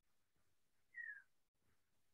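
Near silence: room tone, broken once about a second in by a short high chirp that falls in pitch.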